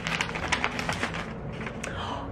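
Gift wrapping paper being torn and crinkled off a small wrapped book: a quick, irregular run of paper rips and crackles.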